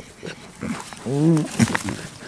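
A goat gives one short, low bleat about a second in, its pitch rising and then falling. A few light clicks and knocks come around it.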